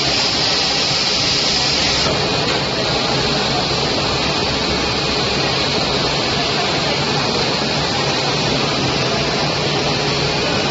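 Rotary PVC shoe injection moulding machine running: a steady mechanical hum under a continuous hiss, the high part of the hiss dropping about two seconds in.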